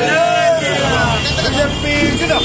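People's voices speaking over steady street traffic noise.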